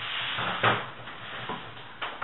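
A wooden dining chair being pulled out from the table, its legs scraping on the floor, with a louder scrape about half a second in and a softer knock near the middle.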